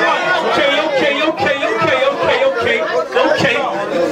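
Overlapping speech: several men talking and calling out at once, with no single clear voice.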